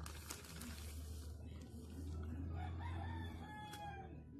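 Plastic zip-lock bag rustling as it is handled in the first second, then a rooster crows once near the end, a held call of about a second that falls slightly in pitch.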